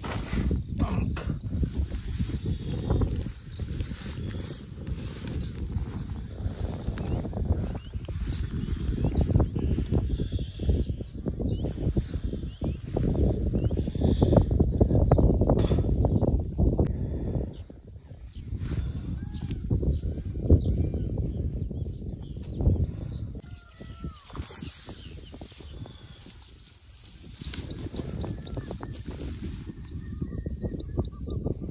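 Wind rumbling on the microphone with handling noise, rising and falling in strength, and a few birds chirping faintly in the second half.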